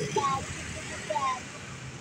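Tokyo Metro 6000 series electric commuter train rolling slowly past with a steady low running noise. Short snatches of nearby voices sound over it twice.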